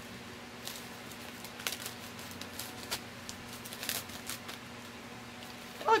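Clear plastic zip-top bag crinkling in short, irregular rustles as a piece of Aida cross-stitch fabric is handled in it.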